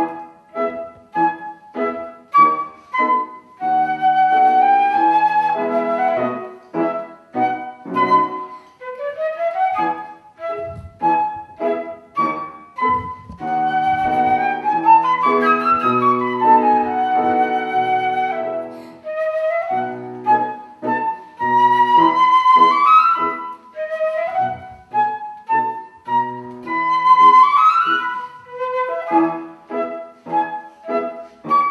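A silver concert flute playing a classical piece: fast runs of short notes and phrases that climb to high held notes.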